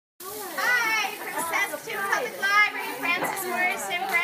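Several children talking and calling out at once, their high voices overlapping.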